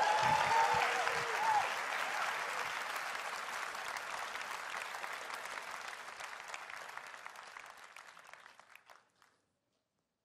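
Large audience applauding, with a few cheers in the first second or two. The applause fades away gradually and cuts off about nine seconds in.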